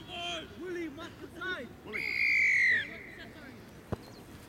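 Voices calling out, then a single long referee's whistle blast for the kickoff, the loudest sound here, falling in pitch. A sharp knock follows near the end.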